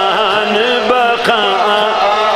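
A man's voice chanting a sermon in a melodic, sung style through microphones and loudspeakers, holding long notes that bend in pitch.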